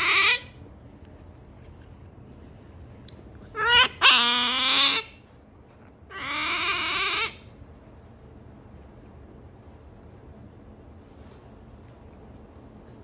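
An otter's high-pitched whining calls: a short one at the start, a rising call about three and a half seconds in that runs straight into the loudest, longest call, and one more about a second long near the middle.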